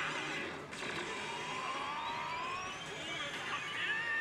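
Oh! Bancho 4 pachislot machine's electronic effect sounds: a long, slowly rising sweep that builds up to the bonus-confirmation effect, with new effect sounds starting near the end, over a steady loud din.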